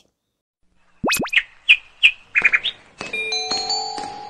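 Intro jingle: after a second of silence, two very fast rising swoops, then a run of short cartoon bird chirps, then chiming musical notes held over each other near the end.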